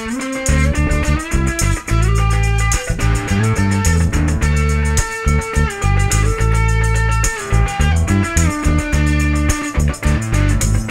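Live band instrumental passage: a hollow-body electric guitar picking notes, some of them bent, over a bass guitar holding steady low notes, with no singing.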